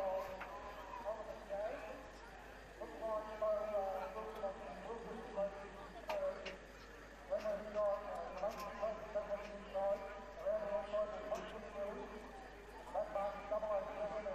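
A man's voice calling a pony harness race, fast and indistinct, in long unbroken phrases with short pauses.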